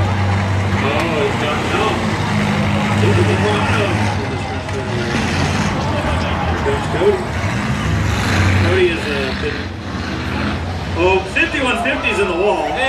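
Race car engines running on the oval, a steady low drone that swells a few times, with people's voices talking over it.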